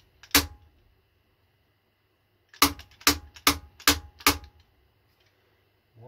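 Hammer blows on a steel angle-iron workpiece clamped in a machine vise, tapping it down to seat it on the parallels beneath. There is one sharp blow, then a run of five quick blows about two and a half a second, each with a short metallic ring.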